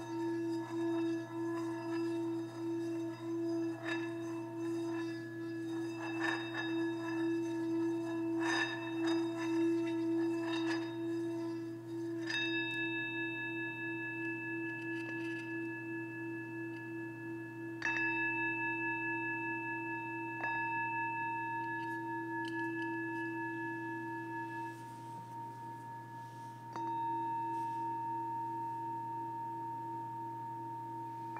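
Small brass singing bowl played with a wooden stick: a steady, pulsing hum with ringing overtones as the stick works the rim, then four strikes in the second half, each ringing on with bright high overtones.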